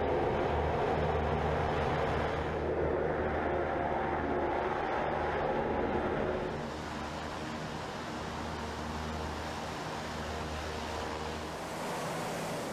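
US Navy LCAC hovercraft's gas-turbine engines, lift fans and large shrouded propellers running in a steady drone with a rush of air, as the craft comes ashore on its air cushion. The sound drops somewhat a little past halfway.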